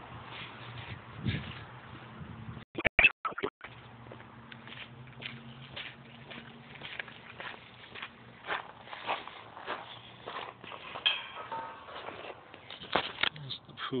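Footsteps of a person walking across grass and onto pavers, a step every half second or so. A few sharp clicks with brief dropouts about three seconds in, and a faint steady low hum under the steps.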